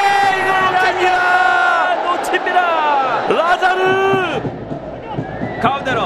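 Football stadium crowd yelling in long held shouts as an attack reaches the goalmouth, the voices falling away in pitch about three seconds in as the chance comes to nothing; the sound thins and drops briefly near the end.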